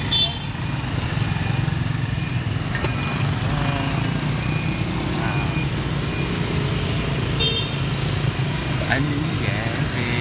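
Steady rumble of passing motorbike and car traffic, heard from a moving pedicab, with a few short horn beeps in the middle.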